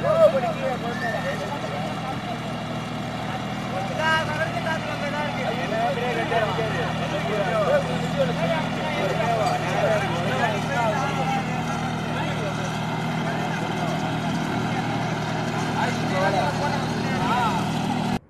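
Sonalika GT20 compact tractor's diesel engine running steadily while it pulls a heavy load of hay, with several men shouting and calling out over it.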